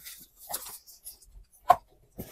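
Zipper on a padded fabric carrying bag being pulled open in short, uneven tugs, with faint fabric rustling and a brief sharp click near the end.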